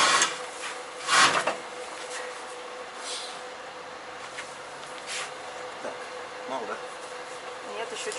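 A heavy truck spare tyre scraping and rubbing against its under-body carrier as it is shoved into place, with one loud scrape about a second in and a few light knocks after. A faint steady hum runs underneath.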